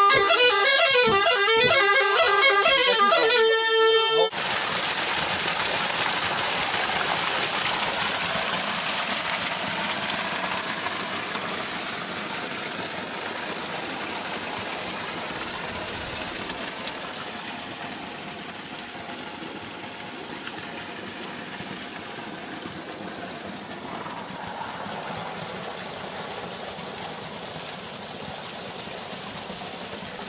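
Touloum (Pontic bagpipe) music, a steady drone under a melody, cut off abruptly about four seconds in. It gives way to a steady rushing noise with no clear tones that slowly grows quieter.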